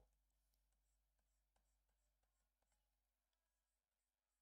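Near silence, with a few very faint ticks of a stylus tapping and sliding on a pen display.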